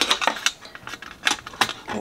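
Irregular clicks and taps of a metal watercolour palette tin and its plastic pan insert being handled by fingers, about six in all.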